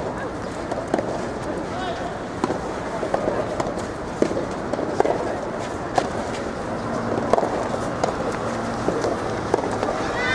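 Soft tennis rally: a soft rubber ball struck by rackets, sharp pocks about every second or so at uneven intervals, over a background of voices.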